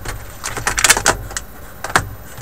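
Cardboard box lid and paper sheets being handled and set onto the kit's box: a quick flurry of rustling and scraping about half a second in, with a sharp knock at the start and another near the end.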